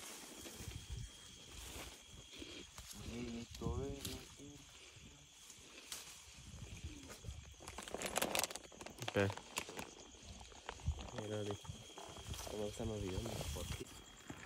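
Soft voices in short bursts, with a brief rustle of leafy guava branches about eight seconds in as fruit is pulled from the tree, over a thin steady high tone.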